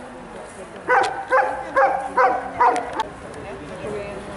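Kuvasz barking five times in quick succession, about two barks a second.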